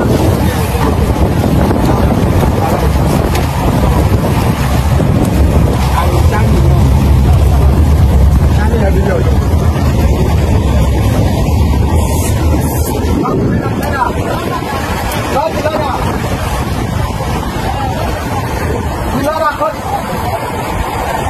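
Speedboat engine running at speed, with water rushing past the hull and wind buffeting the microphone, and voices talking over it. The low engine rumble is heaviest through the middle and eases in the later part.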